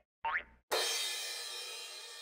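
Transition sound effects for an animated graphic: a short rising sweep, then a bright cymbal-like shimmer that starts suddenly under a second in and slowly dies away.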